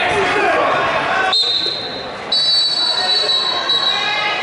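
Voices in a gym, then, about a third of the way in, a long, steady, high-pitched tone starts. Just past halfway it steps up in pitch and gets louder, and it holds to the end.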